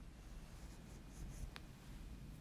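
Quiet room tone with a steady low hum, soft rustles a little over a second in and a single faint click shortly after.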